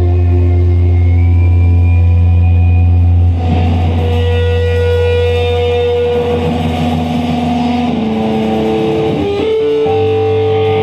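Live rock band playing a slow, sustained passage: electric guitars and electric bass hold long ringing notes. A deep bass note drops away about a third of the way through while the guitar notes shift, and the bass comes back in at the very end.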